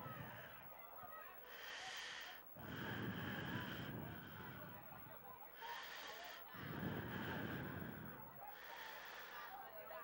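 Slow breathing close to the microphone, faint: about three breaths, each a hissy in-breath followed by a lower puff of out-breath hitting the mic.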